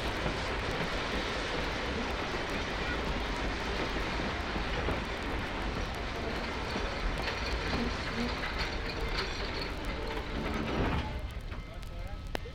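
Archival 78 rpm sound-effect recording of a passenger train pulling into a station, heard from outside: a steady, dense rumble of the moving train under disc crackle, with a faint thin squeal in the last few seconds. About eleven seconds in the rumble drops away sharply as the train comes to a stop.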